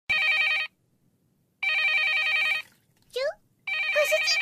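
Telephone ringing: an electronic warbling trill in bursts, a short one, a longer one about a second and a half later, and a third starting near the end, with a brief sliding tone just before it.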